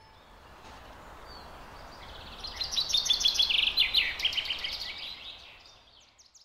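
Songbird chirping: a quick, dense run of high chirps starting a little over two seconds in and fading out near the end, over a faint steady outdoor hiss.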